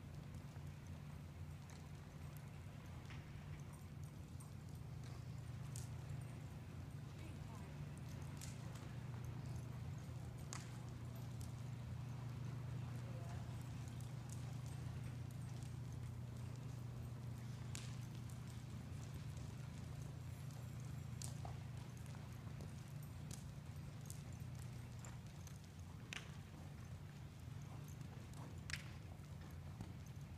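A horse trotting on soft arena dirt, its hoofbeats faint, over a steady low hum.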